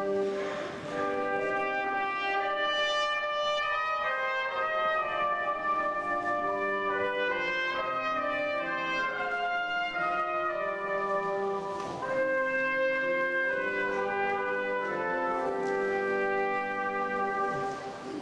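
Brass ensemble playing slow, sustained chords, the notes changing every second or so.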